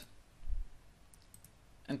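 Faint clicks of a computer mouse over quiet room tone, with a low bump about half a second in.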